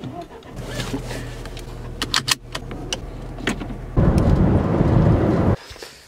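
Inside a Fiat car: a steady low engine and road hum with a few sharp clicks. About four seconds in, a loud rumbling noise lasts about a second and a half, then cuts off suddenly.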